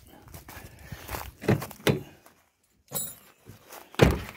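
Footsteps through grass with faint rustling and a few soft knocks.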